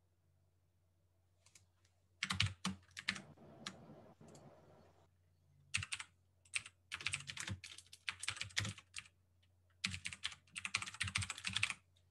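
Typing on a computer keyboard: quick runs of keystrokes in three bursts with short pauses between them.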